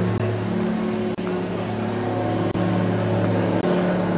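A steady low mechanical hum of several held tones, broken twice by a short click and dropout.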